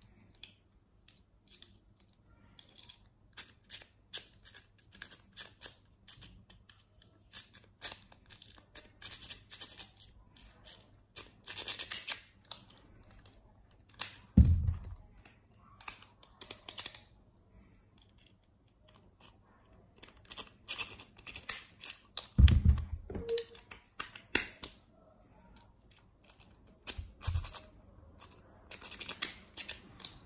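Steel lock picks scraping and clicking inside padlock keyways in short irregular runs. A few dull knocks fall between them, about halfway through and twice more near the end.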